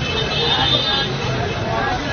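Busy street crowd: many voices mixed with traffic, and a brief high-pitched tone in about the first second.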